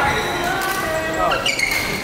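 Court shoes squeaking on a synthetic badminton court floor several times, with sharp racket hits on a shuttlecock, echoing in a large sports hall.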